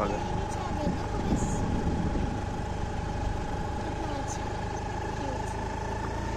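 A Honda Activa scooter's engine idling steadily, a low rumble under a constant whine that creeps slightly up in pitch.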